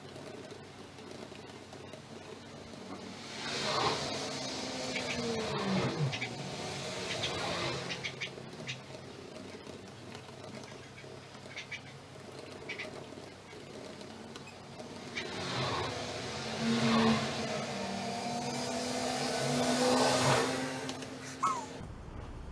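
Street traffic passing outside: two vehicles go by, each swelling and fading, the first about four seconds in with an engine note that falls in pitch as it passes, the second near the end.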